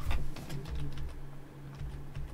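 Scattered soft clicks of a computer keyboard and mouse over a steady low hum.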